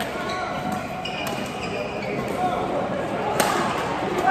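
Badminton rackets striking a shuttlecock in a rally: a few light, sharp cracks, with the loudest hit about three and a half seconds in, echoing in a large sports hall over background chatter from the neighbouring courts.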